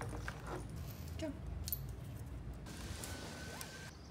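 Small clicks and rattles as a plastic retractable dog leash and harness are handled, over a low rumble. In the last second or so a steady hiss comes in, with a faint steady whine in it.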